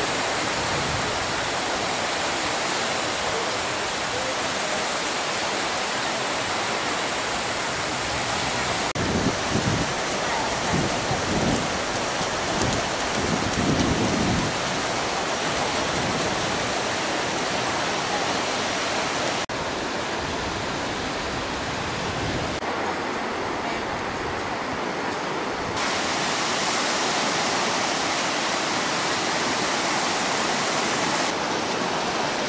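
Sea surf on a sandy beach: a steady rushing noise of waves breaking and washing in, with a few louder low bumps in the middle.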